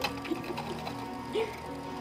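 Soft background music in a lull between lines of children's singing, with a brief faint voice about one and a half seconds in.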